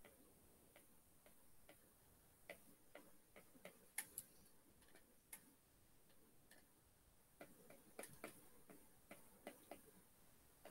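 Faint, irregular taps of a stylus on an iPad's glass screen as letters are written by hand. The sharpest tap comes about four seconds in, and a quicker run of taps comes near the end.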